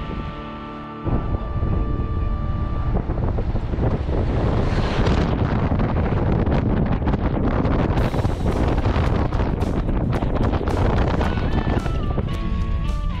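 Strong wind buffeting the camera's microphone: a loud, rough low rumble that cuts in suddenly about a second in and carries on to the end. Background music fades out under it early on and comes back faintly near the end.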